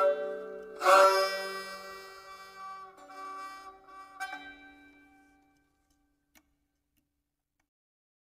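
Closing notes of a Balochi folk tune on string instruments led by the sorouz: a loud final string chord about a second in rings out and slowly decays, with a lighter note near four seconds, dying away to nothing about halfway through.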